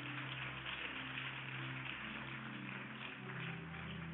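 Congregation applauding, an even patter of many hands, over soft sustained musical chords that shift to a new chord near the end.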